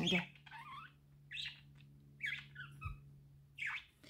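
A few short, faint bird chirps in the background, spread through a pause, over a steady low hum.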